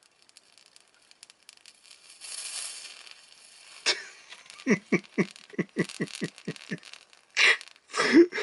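A failing TV flyback transformer crackling with faint sparking clicks, then hissing for about a second and a half as it spurts smoke: its insides are breaking down under high voltage.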